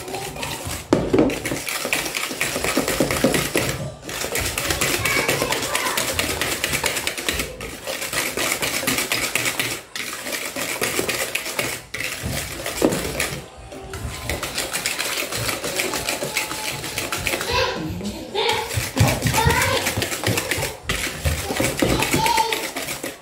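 Wire whisk beating a thick batter of eggs, sugar and margarine in a bowl by hand: a fast, steady scraping and clicking of the wires against the bowl, broken by brief pauses every few seconds.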